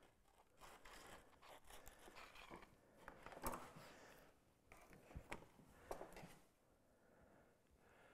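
Faint rasping strokes of a plane iron in a honing guide being rubbed back and forth on abrasive paper, grinding nicks out of the edge and working it square, with a few light clicks.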